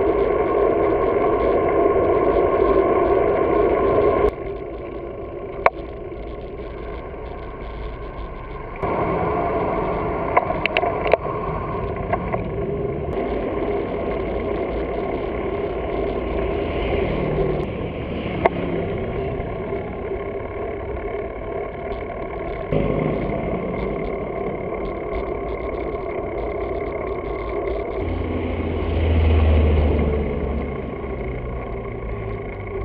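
Wind and road noise from a bike-mounted action camera on city streets, jumping abruptly in level several times, with a few sharp clicks. Near the end a car's engine rumbles loudly alongside.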